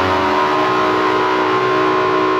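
Distorted Gibson Les Paul electric guitar through a Hughes & Kettner Tubemeister tube amp, holding one long sustained note of a guitar solo, its pitch steady.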